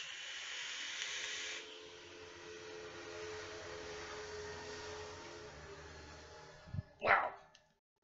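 A hit drawn through a rebuildable dripping atomizer, air hissing through it for about a second and a half, followed by a long, steady exhale of a large vapour cloud. Near the end comes a short, sharp throat sound.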